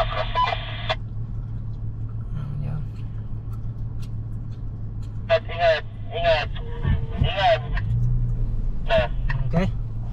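Off-road SUV engine droning steadily, heard from inside the cabin while driving. A thin, small-speaker-sounding voice fills the first second, and short snatches of voices come in the second half.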